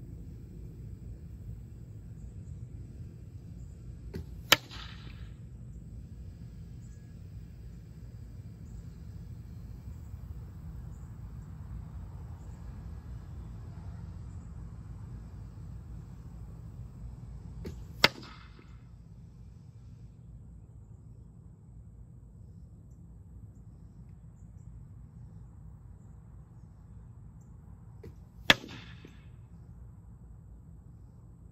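Three field-tipped arrows hitting a birch plywood target, about 13 s and then 10 s apart. Each hit is a sharp crack followed by a short buzzing rattle as the shaft vibrates in the board, over a steady low background hum.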